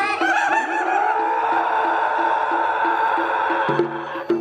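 A performer's long, high held vocal cry, wavering at first and then steady, over a Balinese gamelan repeating a short pulsing figure; near the end the gamelan shifts to lower, louder notes.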